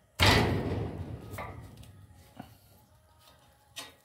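A plastic shade-cloth fence hanger clip, closed around the cloth over a spark plug, is struck once with the fist: a sudden loud thump that dies away over about a second and a half as the clip snaps together. A few small clicks follow.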